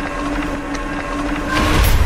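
Cinematic intro sound design: a steady, droning tone, then a whoosh that swells about one and a half seconds in and runs into a deep rumble.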